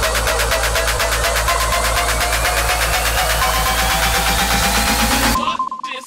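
Electronic dance music build-up: a rapid, even kick drum pulse under a synth sweep that rises slowly in pitch. It cuts off suddenly shortly before the end, and a vocal sample starts over a sparser beat.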